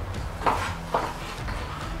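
Chef's knife knocking on a plastic cutting board while tomatoes are diced: two short knocks about half a second apart, over a low steady hum.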